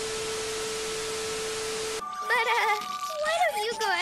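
Television static hiss with a steady test tone, used as a glitch transition, cutting off sharply about two seconds in. Then a girl's high, wavering voice follows, with no clear words.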